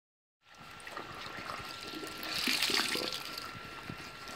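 Water running from a tap into a sink, splashing over a dyed cotton bag as gloved hands rinse and squeeze it. The sound starts about half a second in and splashes louder around the middle.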